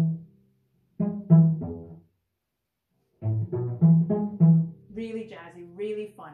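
Cello played pizzicato: short phrases of plucked low notes, each dying away quickly, in separate groups with pauses between, one of three notes and a longer one after. A woman's voice begins speaking near the end.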